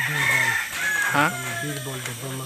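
A rooster crowing: a long, high, drawn-out call that slides slightly down in pitch, heard behind a man's voice.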